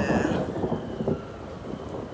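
A thunder rumble, loudest at the start and dying down over about a second.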